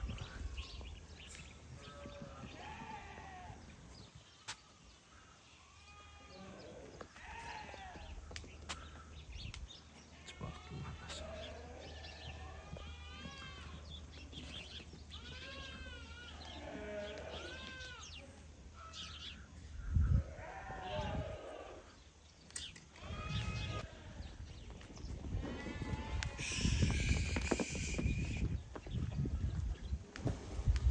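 Sardi sheep bleating again and again, in short rising-and-falling calls. A louder noisy stretch comes near the end.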